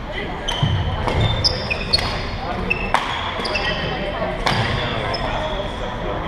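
Badminton rally on an indoor wooden court: sharp racket-on-shuttlecock hits every second or so, mixed with short high squeaks of shoes on the floor, in a hall's echo.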